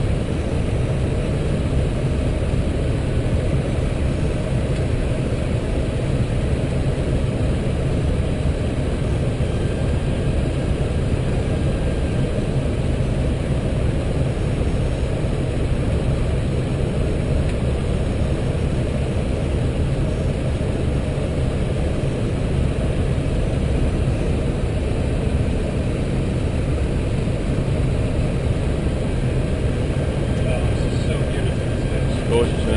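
Steady low rushing noise inside the flight deck of an Airbus A320 on final approach: airflow and engine noise at constant level.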